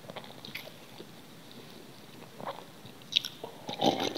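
Close-miked chewing of a mouthful of food, with soft, sparse wet mouth clicks. Near the end come louder, denser sounds as she drinks from a glass.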